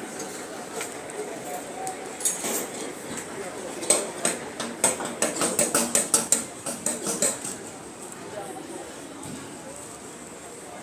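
A quick run of sharp clinks or knocks, about four a second, lasting about three seconds from midway, over a background of street noise and voices.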